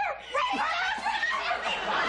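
Studio audience laughing: a short burst at first, then from about half a second in a full, sustained wave of crowd laughter.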